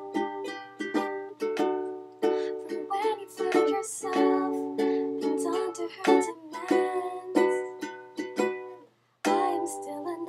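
Ukulele strummed in steady, repeated chords, breaking off for a moment near the end before the strumming resumes.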